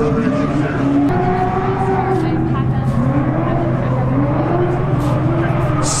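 A performance car's engine running at high revs, its pitch rising and falling, with some tyre squeal, under a public-address announcer's voice.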